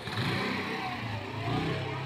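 A motor vehicle engine running, its pitch rising and falling slightly.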